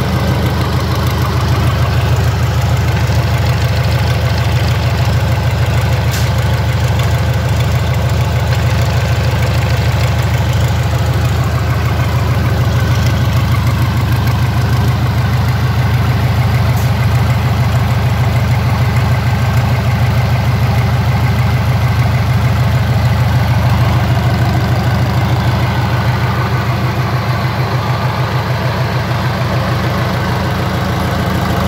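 Yanmar 4CHK four-cylinder marine diesel engine running steadily at an even speed during a test run, with no revving.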